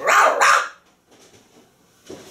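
A woman letting out a loud, rough, growl-like "rah!" in two quick pulses lasting about half a second.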